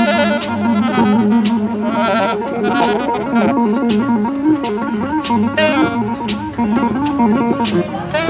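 Live instrumental duo: an electric bass guitar plays a melodic line that bends up and down, and a saxophone plays phrases in and out over it.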